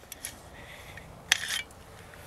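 Light metal clicks and a short scrape as the one-piece bolt is slid out of the AR-57's upper receiver, with one sharper click about a second and a third in.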